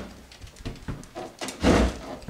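Light knocks and rustling as a person shifts his weight on a wooden chair, then a louder short noise about one and a half seconds in.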